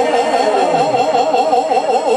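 Bosnian izvorna folk music: a long note held with a wide, fast vibrato.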